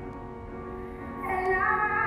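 Slow sung music over sustained accompaniment: a held note eases off, then a new, louder phrase begins about a second and a half in.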